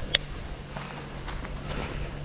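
A fabric bag being opened and handled: one sharp click just after the start, then faint rustling and light taps, over a faint steady low hum.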